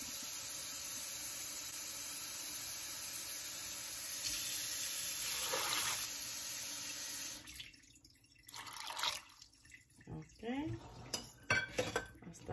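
A stream of water running steadily into a stainless steel pressure cooker pot over soaked beans, filling it to the fill mark; the flow gets louder about four seconds in and is cut off suddenly past the halfway point. A few light knocks of the pot being handled follow.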